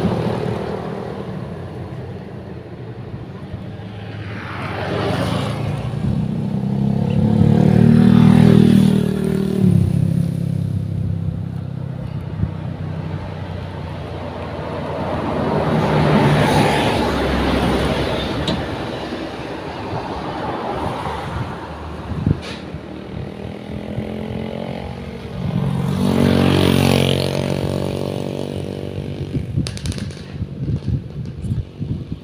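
Road traffic passing close by, at least one vehicle a motorcycle: three engine sounds, each swelling up as it nears and fading as it goes, the loudest about eight seconds in.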